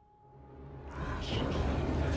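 A deep, low rumble swelling up out of near quiet and growing steadily louder, with a few brief hissing hits on top about a second in: a dramatic sound-effect build-up.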